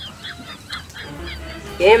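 Birds calling in the background: many short, high chirps in quick succession. A man starts talking near the end.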